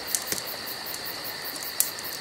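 Crickets chirping steadily, with a few faint sharp clicks.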